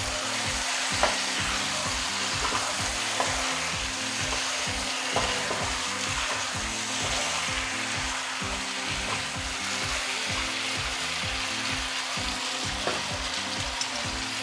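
Chicken pieces, diced bottle gourd and tomato sizzling steadily in a nonstick pan as they are stirred with a wooden spatula. A few light clicks come from the spatula against the pan.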